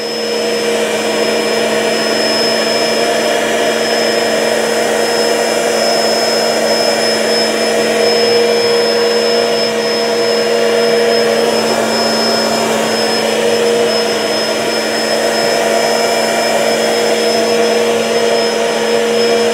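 Three Bissell SpinWave spin mops running together with their pads spinning, one of them (the SpinWave + Vac) with its vacuum suction on. The sound is a steady motor hum with a faint high whine.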